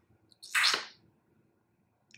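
A single short, breathy exhale about half a second in.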